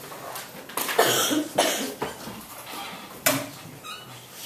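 About four short, sudden noises in a room over low background noise, the loudest about a second in and another near the end.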